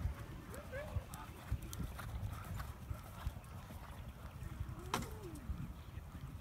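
Muffled, irregular thuds of a horse's hooves on the sand footing of a dressage arena, with faint distant voices and one sharp click about five seconds in.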